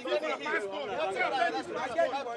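Several men talking over one another in lively, overlapping conversation, with no words standing out clearly.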